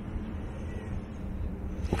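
Eachine Tyro 119 six-inch FPV quadcopter, with 2407 motors, buzzing in flight. The propeller drone grows slowly louder as the quad comes closer.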